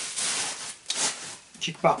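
Plastic bubble wrap rustling and crinkling as it is handled and pulled out of a cardboard box, in a couple of short bouts in the first second.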